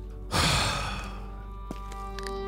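A heavy sigh: one breathy exhale that starts suddenly and fades over about a second, over quiet, sustained background music.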